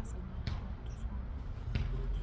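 Three dull knocks, at the start, about half a second in and near the end, over a steady low rumble.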